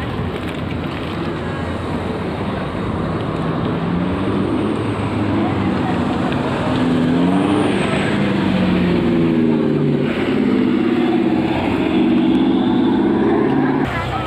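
A car engine running close by on the road, its pitch wavering up and down, growing louder over the second half.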